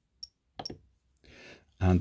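Two short clicks, about half a second apart, from keys being pressed on a Jeti DS-24 radio control transmitter.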